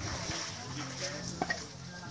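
Swimming pool water splashing and sloshing as people move about in it, with a short knock about one and a half seconds in.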